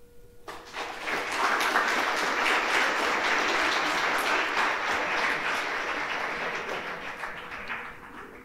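A large audience applauding: the clapping starts about half a second in, swells quickly, holds, then dies away near the end.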